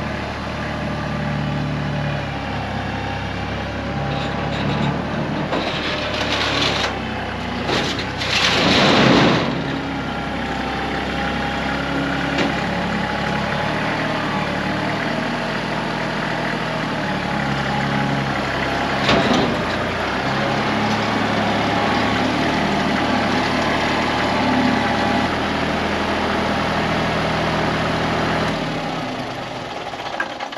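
Kubota compact tractor's diesel engine running and changing speed as it is driven up onto a flatbed trailer, with a loud rushing burst about eight seconds in. The engine shuts off near the end.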